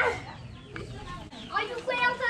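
Chicken clucking, with a sharp call at the start and shorter calls near the end.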